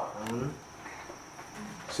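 Crickets chirring in a faint, steady, high-pitched trill.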